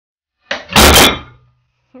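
A wooden miter joint glued with Liquid Nails construction adhesive gives way under load and stacked metal weight plates crash onto the wooden workbench: a short crack, then a loud crash about a second in, with a brief low ring fading afterward.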